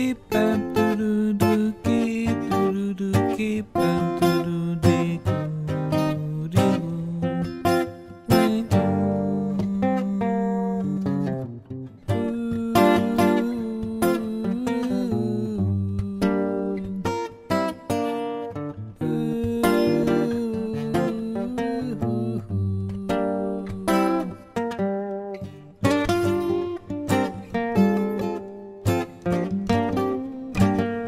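Background music led by plucked acoustic guitar, a steady stream of picked notes over held bass notes.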